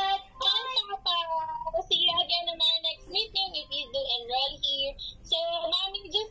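A children's goodbye song playing from a tablet's speaker: a child's singing voice carries the melody over backing music.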